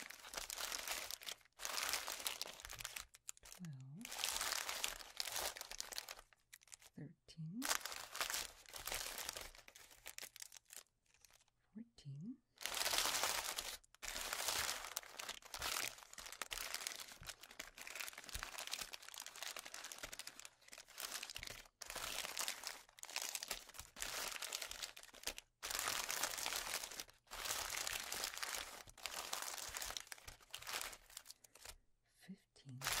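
Crinkly plastic wrappers of fun-size chocolate candies crinkling as hands shuffle and sort through a pile of them, in bursts of a second or two with short pauses between.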